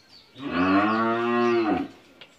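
Cattle mooing once: a single long, steady-pitched moo that starts about half a second in, lasts about a second and a half and drops slightly in pitch as it ends.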